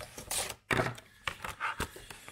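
Clear plastic blister packaging rustling and crinkling as a soldering gun is pulled out of it, with a few sharp knocks as the gun's plastic body is handled and set down on a hard tabletop.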